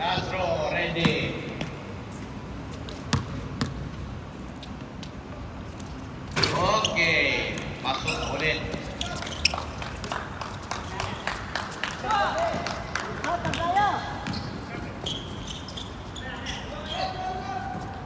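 Basketball bouncing and being dribbled on a court, repeated sharp thuds, with players shouting to each other at times.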